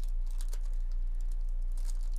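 Shiny foil wrapper of a 2024 Topps baseball card pack crinkling and tearing as it is pulled open by hand, in short irregular crackles that are densest near the end. Under it runs a steady low electrical hum.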